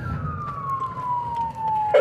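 Police car siren on its wail setting, one slow downward sweep in pitch, heard from inside the pursuing cruiser's cabin over a low engine and road rumble.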